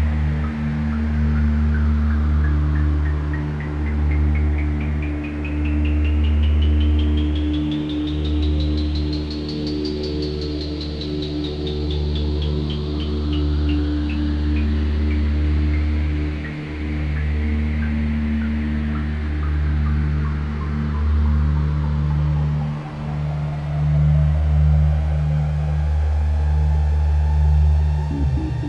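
Generative ambient electronic music from a modular synthesizer: a low sustained drone under steady held tones, with a stream of short blips that rises in pitch for about ten seconds and then falls away.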